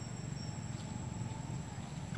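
Steady high-pitched insect drone over a constant low rumble of outdoor background noise.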